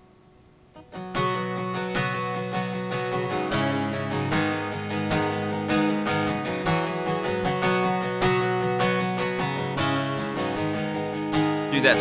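Acoustic guitar with a capo at the fourth fret, strummed in a steady rhythmic intro pattern over G, A minor, E minor and C chord shapes, sounding in B. The strumming starts about a second in, after a brief quiet.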